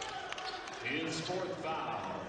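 A basketball bounced on a hardwood court, a few sharp knocks near the start, under faint voices in the arena.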